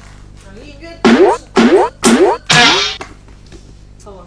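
Cartoon 'boing' sound effect played four times in quick succession, each a loud rising sweep in pitch, laid over soft background music.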